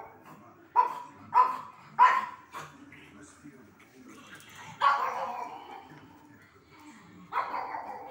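A pug barking excitedly: three sharp barks in quick succession about a second in, then two longer barks later.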